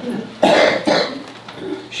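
A person coughing: one loud cough about half a second in, followed by quieter sound until speech resumes.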